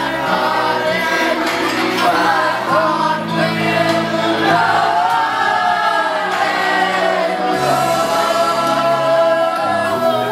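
Karaoke: a ballad sung over a backing track, several voices singing along together.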